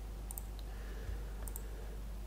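Two faint computer mouse clicks about a second apart, each a quick press-and-release tick, as a menu item is chosen, over a low steady hum.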